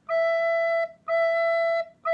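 Descant recorder playing low E: the same steady, clear note sounded twice, each held just under a second with a short gap between, and a third starting at the very end.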